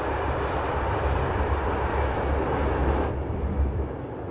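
Steady low rumble of a moving vehicle heard from inside, with a higher hiss over it that drops away about three seconds in.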